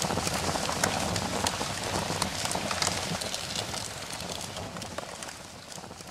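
Fire crackling: a dense run of sharp pops and snaps over a steady hiss, fading down through the second half.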